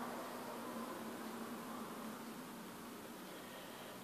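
Quiet room tone: a steady low hiss with a faint hum underneath.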